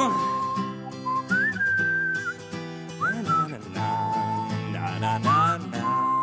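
The closing section of a live pop-rock song: a whistled melody of long held notes with short upward scoops, over sustained acoustic guitar and band chords.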